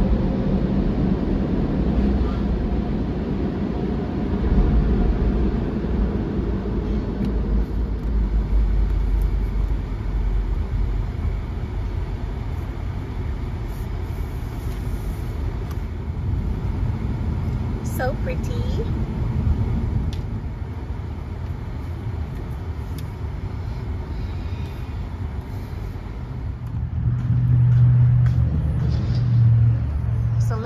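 Steady low rumble of a car's engine and tyres heard from inside the cabin while driving, with a brief sharp sound about two-thirds of the way through and a louder low hum near the end.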